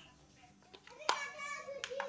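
A sharp plastic click about halfway through as a mains plug is pushed into a power strip socket, with a smaller click near the end. A child's voice is heard in the background just after the first click.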